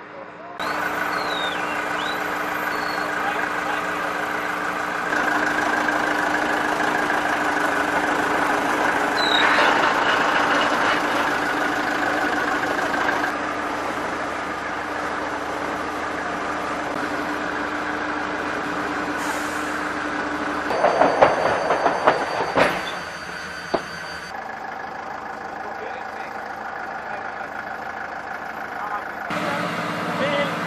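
Steady whine and rumble of a C-130 Hercules turboprop running on the apron, shifting in level at several points. A short burst of knocks and clatter comes a little past two-thirds of the way through.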